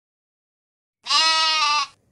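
A single loud, pitched cry held for just under a second, starting about a second in after dead silence, edited in over a title card as a sound effect.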